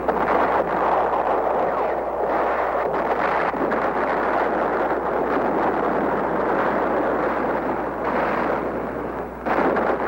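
Continuous roaring rumble of explosions and fire at a hit ammunition dump, steady and dense rather than separate blasts, jumping louder near the end.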